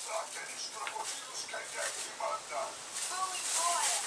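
Faint talking: a person's voice in the background, with no clear words.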